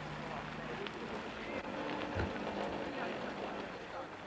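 Car engine running low and slow at crawling pace, with one dull thump a little after two seconds in.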